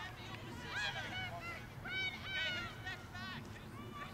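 A flock of geese honking: many short, high calls, each rising and falling, overlapping one another.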